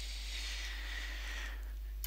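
Quiet microphone room tone: a steady low hum with a soft hiss over it that fades out shortly before the end.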